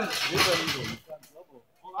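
People's voices: loud over the first second, then quieter and broken.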